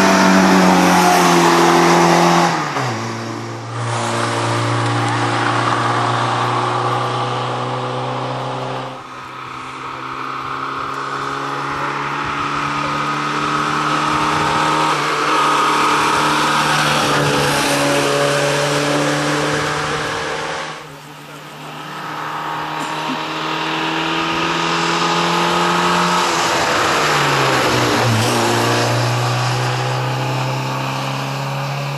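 Polski Fiat 125p rally car's four-cylinder petrol engine revving hard as the car drives past at speed. The engine note drops and climbs again several times, with brief dips in loudness between passes.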